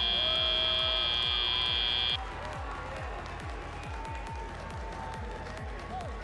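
Field buzzer marking the end of a FIRST Robotics Competition match: a steady, high tone that cuts off suddenly about two seconds in. Arena background music with a steady beat runs under it and carries on afterwards.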